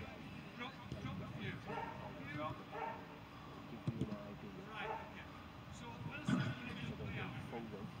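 Faint, distant voices of footballers calling to each other during a small-sided game, with a couple of short knocks about four and six seconds in.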